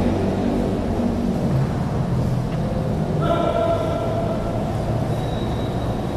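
Steady low rumble of a large indoor badminton hall's ambience, with a short pitched call or tone lasting about a second, a little past the middle.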